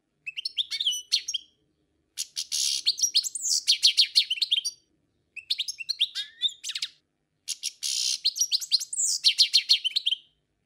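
A small bird singing: bursts of rapid, high-pitched chirps and trills, four or five phrases broken by short pauses, the longest running for nearly three seconds.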